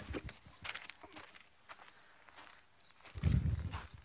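Footsteps walking over dry dirt and sparse grass: a few faint, irregular steps, then a brief, louder low rumble about three seconds in.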